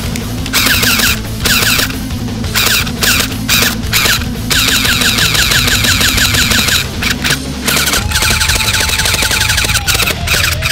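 Heckler & Koch MP7 electric airsoft gun (AEG) firing on full auto in a string of short bursts, with one longer burst of about two and a half seconds midway. Each trigger pull gives a rapid, high buzzing run of shots from the motor-driven gearbox.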